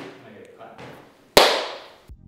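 A single sharp bang about a second and a half in, the loudest sound, ringing away over about half a second.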